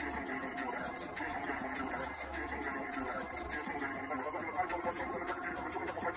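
Music with a steady beat playing through the small built-in laptop speakers of a MacBook Air 11 and a MacBook Pro 15 side by side.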